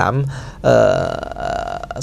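A man's low, creaky, drawn-out throat sound, held for about a second and a half after his last word.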